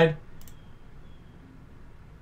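A single computer mouse click about half a second in, clicking through to the next image, after the last syllable of a man's speech; then faint room noise.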